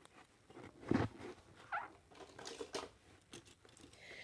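Faint handling noises of plastic toys on carpet: a soft dull knock about a second in, then light scattered clicks and rustles.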